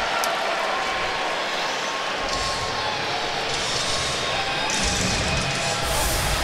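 Hockey arena crowd noise, a steady din, with faint music under it; the noise grows fuller from about two seconds in.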